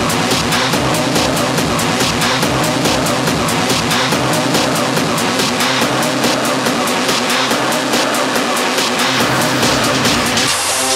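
Loud industrial techno played through a club sound system: a dense, harsh, distorted layer driven by fast, evenly spaced ticking hits, with little deep bass in it.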